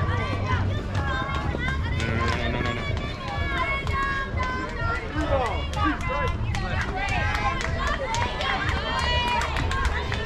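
Many overlapping high-pitched voices calling out at once, with a run of sharp claps through the second half.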